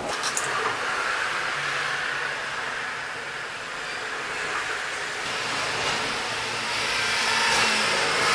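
Motor oil pouring from a quart bottle into the engine's oil filler neck: a steady rushing pour that grows a little louder near the end.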